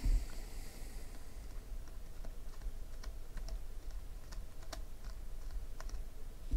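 Chromium-stock trading cards being flipped through by hand, each card slid off the stack with a light click, at an irregular pace of about one or two a second, over a low steady hum.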